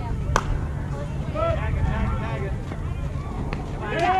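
Softball bat hitting the ball once, a sharp ringing crack about a third of a second in, followed by players' voices calling out over a steady low rumble.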